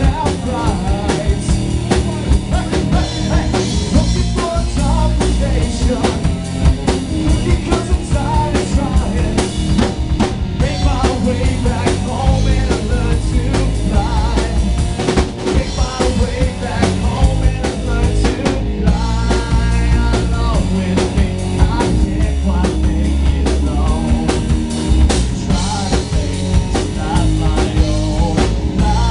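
Rock band playing live, the drum kit loudest with kick and snare hits, over electric bass and guitar, loud and continuous.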